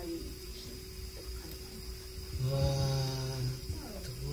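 A man's voice holding one long, level "hmmm" for about a second, starting past the middle, picked up through a microphone: a thinking sound before an answer. Before it there is only a faint steady hum.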